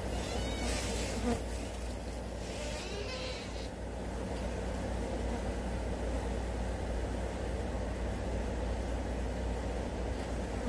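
Flies buzzing around chicken bones, the buzz of many in flight over a steady low rumble, brighter for the first few seconds.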